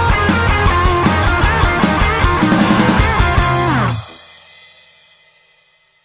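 Rock band playing loud with electric guitar, bass and drum kit. Just before four seconds in, the notes slide downward in pitch, then the band stops abruptly and the sound rings out and fades away.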